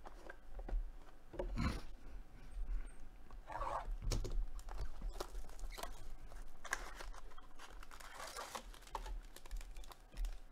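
Gloved hands opening a sealed trading-card hobby box and unwrapping a plastic-wrapped pack from inside it: cellophane crinkling and tearing, with cardboard rustling and light clicks and taps in short irregular bursts.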